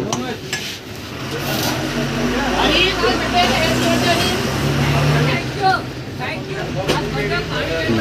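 Background chatter of several people with a vehicle engine's low hum that builds up about a second and a half in and dies away about five seconds in.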